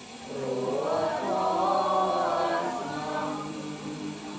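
A group of Buddhist lay devotees chanting together in unison. The many voices swell into a rising melodic phrase shortly after the start and ease off near the end.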